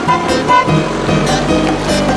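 Upbeat background music over a cartoon monster truck's engine sound effect, a steady low rumble under the music.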